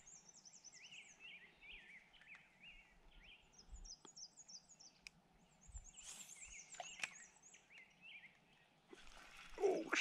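Songbirds singing faintly: repeated runs of quick slurred notes, some high and some lower, over quiet outdoor background noise. A louder rush of noise comes near the end.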